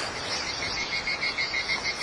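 Background animal chorus: a steady, rapid, evenly pulsing high chirping, several pulses a second, over a faint hiss.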